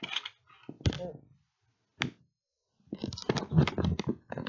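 Handling noise of plastic model train cars on the track: a knock about a second in, a single click at two seconds, then a dense run of small clicks and rattles in the last second.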